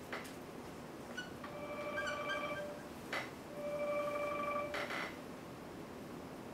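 Dry-erase marker squeaking on a whiteboard in two drawn-out, steady-pitched squeaks about a second each, with a few brief scratchy marker strokes around them.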